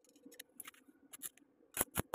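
Stick-welding arc on a square-tube corner joint, struck and broken again and again in short bursts as on thin metal: a few scattered sharp crackles, then near the end a quick run of sharp cracks, about six or seven a second.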